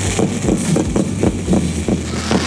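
A ground fountain firework spraying sparks: a steady hiss with rapid popping at about five pops a second.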